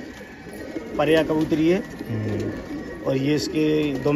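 Domestic pigeons cooing in the loft, several low coos one after another.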